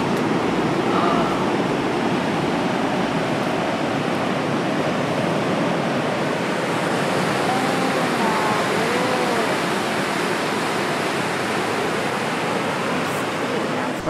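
Ocean surf breaking on the rocks at the foot of a sea cliff, heard from above as a steady, unbroken wash of noise.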